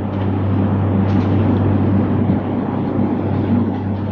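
A steady low hum under a loud, even rushing noise, with no speech.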